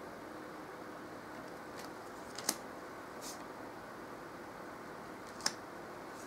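Tarot cards being handled: a few short, sharp clicks and a brief soft swish as cards are moved, over a faint steady room hiss.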